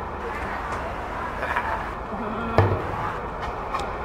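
Steady outdoor background noise with faint voices, and one dull thump about two and a half seconds in.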